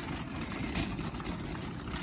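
Steady low rumble of outdoor background noise in a pause between speech.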